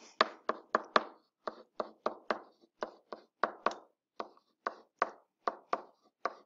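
Pen stylus tapping on a writing tablet while handwriting, a short hard tap with each stroke, about three a second at an uneven pace.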